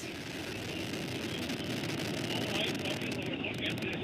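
New Shepard rocket's BE-3 hydrogen-oxygen engine firing as the booster climbs: a steady, dense rushing noise.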